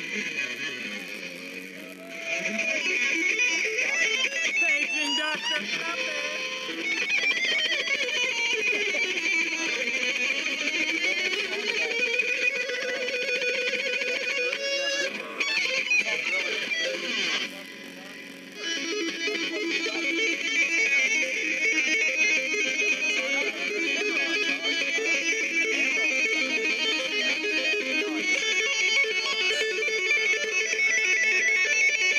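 A band's song played on guitar, with a thin, tinny sound and no bass. The level dips briefly about two seconds in and again just past the middle.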